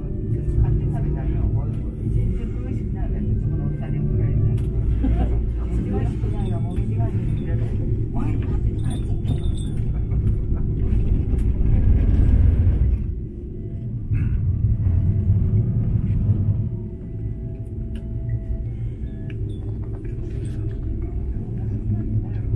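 Steady low rumble inside an aerial ropeway gondola as it runs up the cable. It swells just past halfway, drops off suddenly, then continues a little quieter, with faint voices in the cabin.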